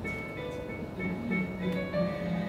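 Background music: a melody of held notes changing every half second or so.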